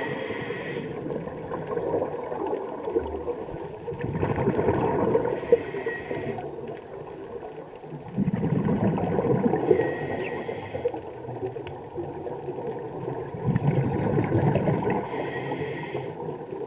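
A scuba diver breathing through a regulator underwater: a rush of exhaled bubbles, then a short hiss of inhaled air, in a cycle about every five seconds.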